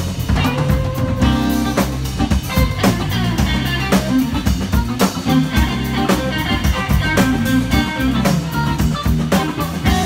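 Live blues band playing: electric guitar notes over a drum kit keeping a steady beat, with a bass line underneath.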